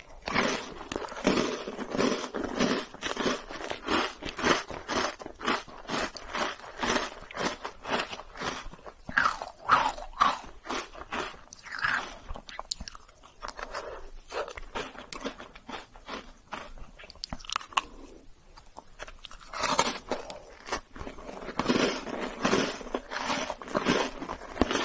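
Biting and chewing of a cookie-and-ice-cream sandwich, close to the microphone: a quick run of mouth and chewing sounds. It goes quieter for a few seconds past the middle, then picks up again.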